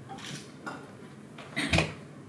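Light clicks and clinks from objects being handled on a lectern, then one louder knock against it about three-quarters of the way in.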